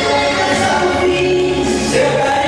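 Two men singing a duet into microphones, holding long notes over accompanying music.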